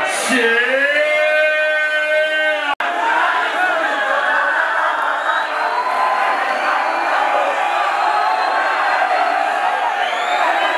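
A woman's voice over the stage PA holds one long note that slides up and then stays level for about two and a half seconds, then cuts off sharply. After that a large crowd cheers and shouts.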